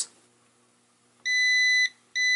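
Near silence, then a digital multimeter's continuity beeper sounds one steady high beep of about half a second, starting a little over a second in. The beep signals a short between the probed MOSFET's drain and source: the switching MOSFET has failed shorted.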